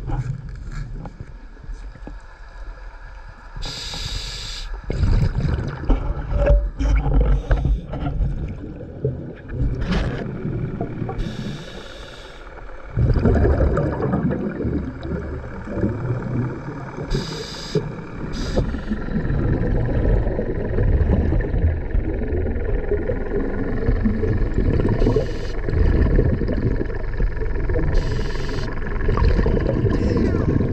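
Scuba diver breathing on a regulator underwater, heard through the camera housing: short hisses of inhalation every few seconds between rumbling exhaled bubbles. About 13 seconds in a louder continuous low rumble of churning water sets in as the diver nears the surface.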